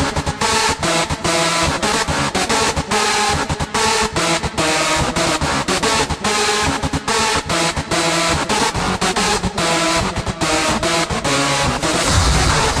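Hardstyle electronic dance track playing: a dark synth melody chopped into rapid stuttering fragments, with little deep bass under it.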